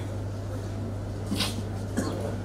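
Room tone with a steady low hum, broken by a short hissing rustle about one and a half seconds in.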